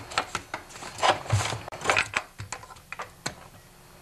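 The handlebar assembly of a Stihl TS 420 cut-off saw being worked loose and pulled off the saw body: an irregular run of knocks, clunks and rubbing of the handlebar against the saw's housing, thinning out near the end.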